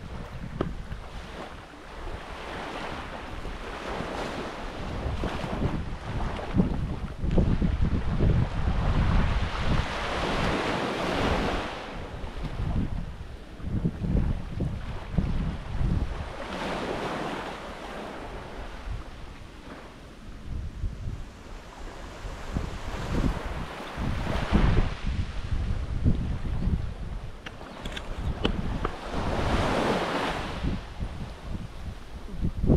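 Wind buffeting the microphone in gusts, with small waves washing onto a sandy beach. The surf swells up and falls away every several seconds, loudest near the middle and again near the end.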